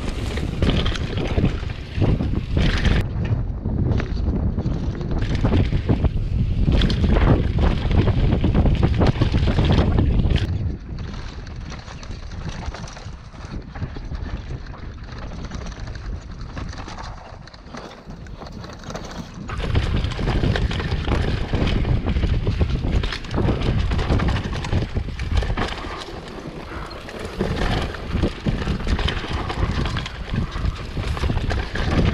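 Wind buffeting the microphone of a camera on a downhill mountain bike, mixed with the tyres, fork and frame rattling over a rough dirt trail at speed. The rush drops to a lower level for about nine seconds in the middle, then comes back as loud as before.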